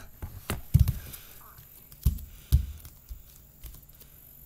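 Children's bare feet stepping and stomping on a hard floor close by: about five irregular low thumps with a few light clicks, the loudest a little under a second in.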